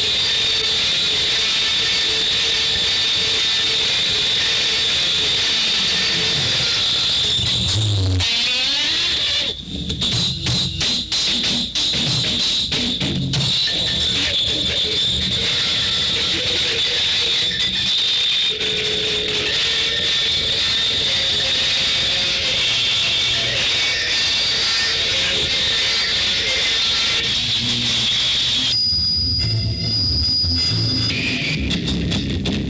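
Experimental noise music: a dense, steady wash of hiss with a high held whine running through it, stuttering through a few brief cut-outs about ten seconds in.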